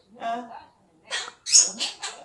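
Blue Quaker parrot (monk parakeet) vocalizing. A short speech-like utterance comes first, then three quick, bright calls in the second half.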